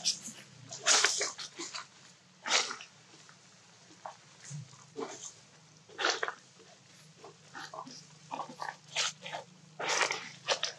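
A series of short, sharp animal calls, a second or more apart, the loudest about a second in. A faint steady low hum runs underneath.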